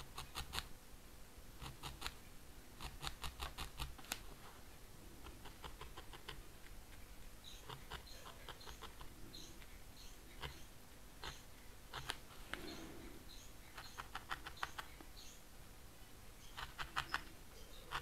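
Felting needle stabbing repeatedly through wool into a foam felting pad, stabbing a strand into place. It comes as faint short runs of quick, soft ticks with pauses between.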